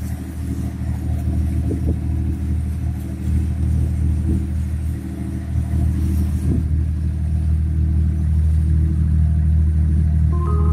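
An engine running steadily: a low, even hum with several steady tones in it, growing a little louder in the second half. A few faint knocks sound over it.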